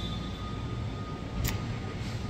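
Steady low rumble and hum of machinery in a large warehouse, with a faint steady tone over it and a brief sharp click about one and a half seconds in.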